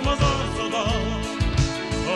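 A recorded Hungarian pop song playing between sung lines: a steady beat under a wavering melody line.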